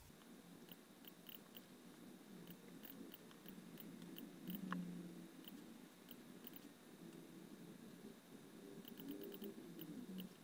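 Near silence: faint room tone with scattered soft clicks of a computer mouse, a few close together near the end.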